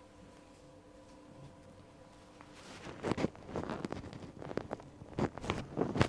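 Body-handling sounds during a manual arm and shoulder stretch: a quiet first half with a faint steady hum, then from about three seconds in a series of short rustles and knocks of hands and clothing.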